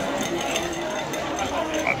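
Ice clinking against a glass as a drink is stirred with a straw, with a few small, scattered clicks over background chatter.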